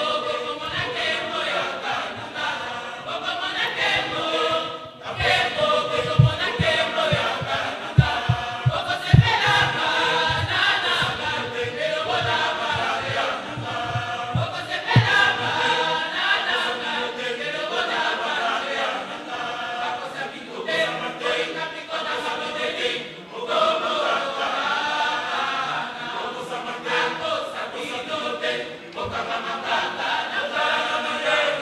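Church choir singing a hymn together, with no instruments to be heard. A run of low thumps sounds under the singing around the middle.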